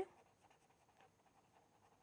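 Faint scratching of a felt-tip marker writing on paper.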